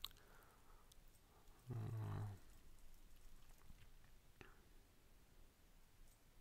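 Near silence: room tone with a few faint computer keyboard clicks. A short low hum from a person's voice comes about two seconds in.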